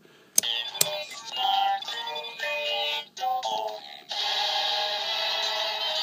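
Electronic sound effects from a DX Fourze Driver toy belt and NS Magphone magnet switches: a couple of sharp switch clicks, then a run of short synthesized tones, then a steady electronic loop from about four seconds in. The belt's and phone's sounds play mostly in sync.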